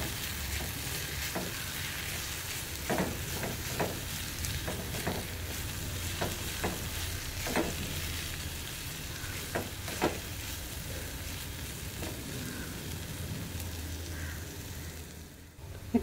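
Grated coconut, shallots and curry leaves sizzling in oil in a metal kadai, a steady hiss broken by irregular scrapes and taps of a spatula stirring against the pan. The sizzle dies down just before the end.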